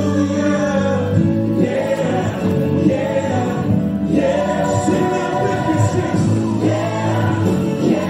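Gospel music with a choir singing.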